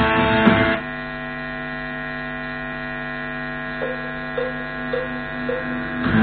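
Electric guitar playing stops about a second in, leaving the guitar amplifier's steady mains hum. Four faint short sounds about half a second apart come near the end.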